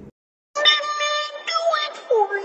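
Silence for about half a second, then a meme song clip with sung vocals starts.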